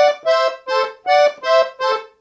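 Leticce piano accordion's right-hand keyboard playing short, detached notes in thirds: a two-note figure played three times.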